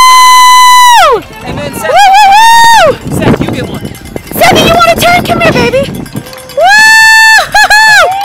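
A small child shrieking in loud, high-pitched, voice-like squeals. Each is held steady for about a second and falls away at the end, three long ones, then short choppy cries near the end.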